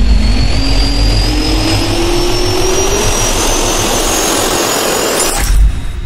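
Jet turbine spool-up sound effect: rushing air with a steadily rising whine, ending in a sudden hit about five and a half seconds in.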